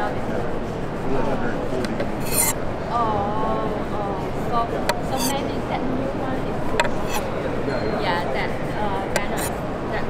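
Hammered-finish ShanZu chef's knife slicing the peel and pith off an orange: rasping scrapes of the blade through the rind, with scattered sharp clicks, over a steady background hubbub.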